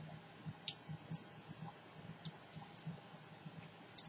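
Faint gulping as a man drinks beer from a glass, with a few small sharp clicks, the loudest just under a second in.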